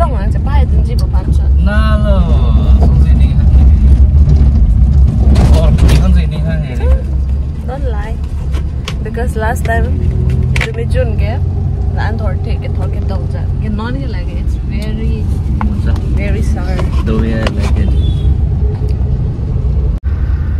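Steady low rumble of a car driving, heard from inside the cabin, with a voice singing over it. The singing is louder in the first six seconds.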